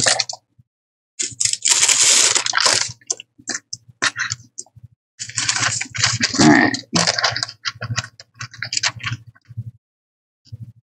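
Paper rustling and crinkling as sheets of rice paper and printed paper are picked up and shifted. It comes in two longer bursts with short clicks and crackles between, and dies away near the end.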